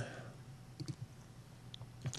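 Quiet room tone in a lecture hall with a few faint, short clicks, about one second in and again near the end.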